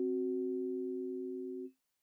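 Two keyboard notes, C and F sharp, sounding together as a solid tritone, fading slowly and cutting off sharply just before the end.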